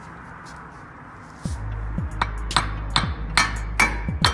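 A hammer striking the end of a CV axle shaft to drive it out of the wheel hub, about five sharp blows in quick succession in the second half, over background music.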